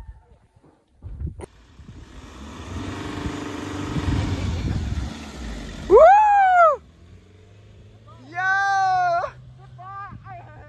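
SUV engine revving, building over a few seconds. Then two loud, high whoops from a person's voice that rise and fall in pitch: the first, loudest, about six seconds in, the second near nine seconds, over a faint low engine hum.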